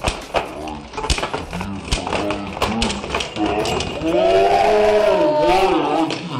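Voices with no clear words, rising into a long wavering cry about four seconds in, over scattered sharp clicks and taps of spinning Beyblade tops knocking together in a plastic stadium.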